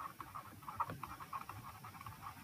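Faint, irregular ticking and scratching of a stylus writing on a pen tablet, several small taps a second.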